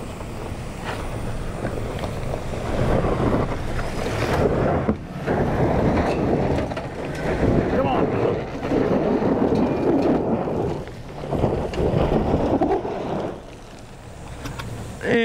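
Chevrolet Silverado 1500 ZR2 AEV Bison pickup driven hard up a steep gravel hill in two-wheel drive, engine revving in surges as the tyres spin and throw gravel. Wind buffets the microphone.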